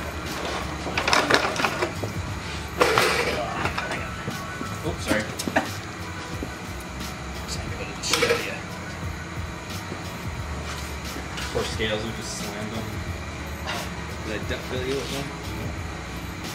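Scattered knocks and clunks as a heavy LS V8 engine is lifted by hand and set down on a wooden pallet on a wheeled dolly, with low voices in the background.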